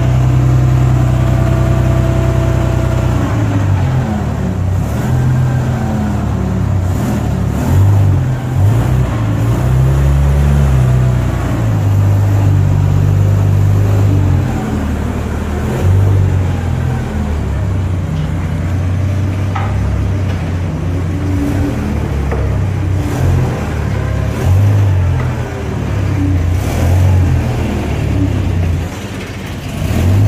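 Engine of a large 22,500 lb Yale riggers forklift running loud and low, revving up and down repeatedly.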